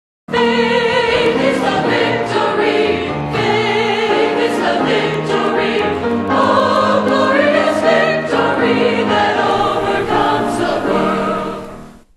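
Choral music: several voices singing with a wavering vibrato over held chords, fading out near the end.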